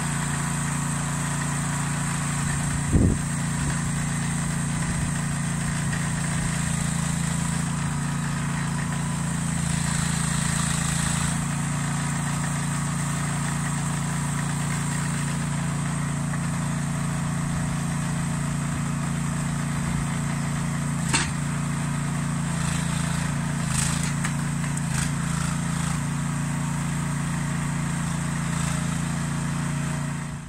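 Small engine powering the hydraulic grabber crane of a forestry timber trailer, running steadily, with a heavy thump a few seconds in and a sharp knock later on as the crane handles a log.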